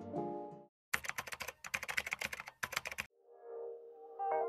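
Rapid keyboard typing clicks lasting about two seconds, a typing sound effect laid over the transition. Before it, background music fades out, and after it soft music comes in.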